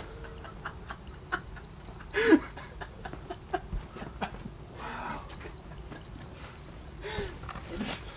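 Petrol burning in small flames after a bottle fireball, with scattered small crackles and pops. A short vocal sound rises and falls about two seconds in, the loudest moment, with fainter ones later.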